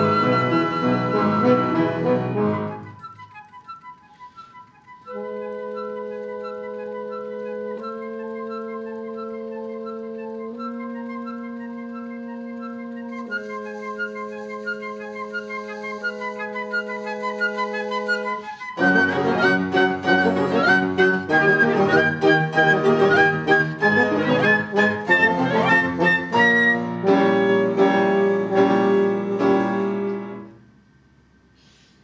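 Classical chamber ensemble of flute, clarinet, French horn and piano playing an instrumental piece. A loud full passage falls away about two seconds in to quiet high flute notes. Steady held chords then sound under short repeated high flute notes, and the full ensemble comes back loud and busy with the piano prominent for the last ten seconds.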